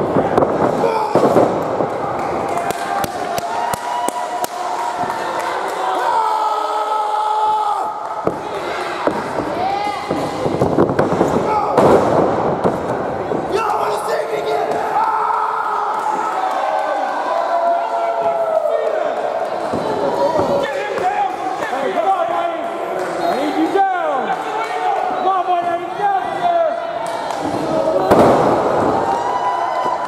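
Wrestlers' bodies slamming onto the wrestling ring mat several times, over almost constant shouting from the crowd and wrestlers.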